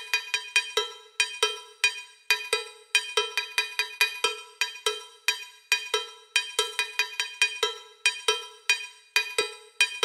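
Cowbell loop from a sample pack playing on its own: sharp metallic strikes in an uneven repeating pattern, some louder than others.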